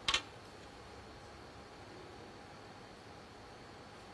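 Snooker cue tip striking the cue ball: one sharp, doubled click just after the start, followed by the quiet hush of the arena.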